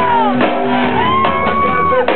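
Live band music with a male lead singer: his voice slides down, then holds one long high note through the second half, over drums, bass, guitar and keyboard.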